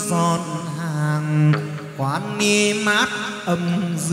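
Chầu văn ritual singing with music: a voice holding long, bending notes with vibrato, sliding between pitches.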